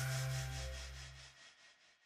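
Tail of a short logo music sting: a low bass note holds until about a second and a half in and stops, under a pulsing, shimmering hiss that fades away near the end.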